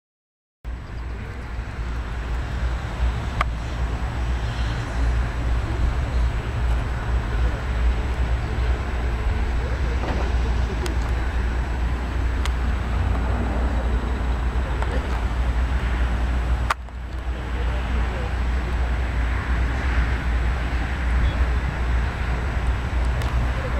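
Outdoor background noise from a camcorder's microphone, starting abruptly about half a second in: a steady, loud low rumble with a few faint clicks, broken by a sudden drop and restart about two-thirds of the way through where the footage is cut.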